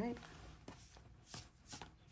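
Tarot cards being handled and fanned out in the hands: a few soft snaps and taps of card stock, spaced out over about two seconds.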